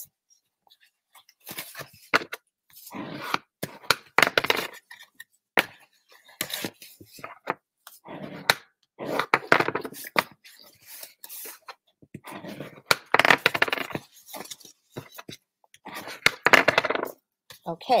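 Red cardstock being folded by hand along its score lines, rustling and crackling in irregular bursts.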